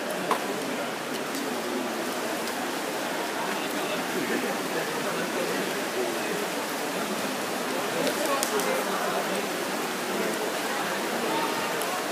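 Indoor swimming pool hall ambience: a steady, echoing wash of crowd voices mixed with the splashing of swimmers racing backstroke.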